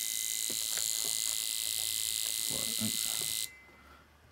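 Port fuel injectors firing rapidly on an EFI simulator, a steady high-pitched buzz that cuts off suddenly about three and a half seconds in as the fuel table cells are zeroed and the injectors are shut off.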